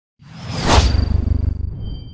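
Logo-reveal sound effect: a whoosh that swells to a peak just under a second in over a deep rumble, with a thin high ringing tone that carries on as the rumble fades.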